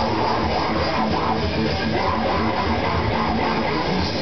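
Grindcore band playing live in a small room: electric guitar, bass guitar and drum kit in a dense, steady wall of loud sound.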